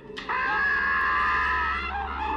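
A man's long, high-pitched battle cry (kiai), starting about a quarter second in and held steadily at one pitch, over a low film-soundtrack hum.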